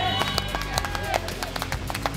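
A group of people clapping by hand, quick irregular claps, with voices and background music.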